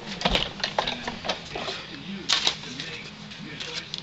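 Hand-cranked die-cutting and embossing machine being turned, the stacked plates and embossing sandwich rolling through under pressure with a run of irregular clicks and knocks.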